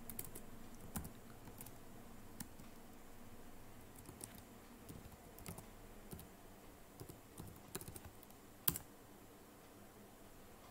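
Computer keyboard typing: a slow, irregular run of faint keystrokes, with one louder key strike near the end.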